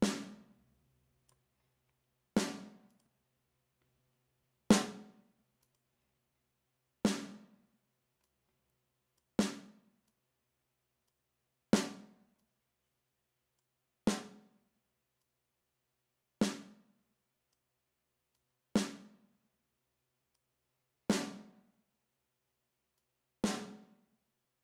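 A single recorded live snare drum hit repeats in a loop, eleven times, about every two and a half seconds, with silence between. Each hit is a sharp crack with a short ring, heard through a software compressor whose attack and ratio are being changed.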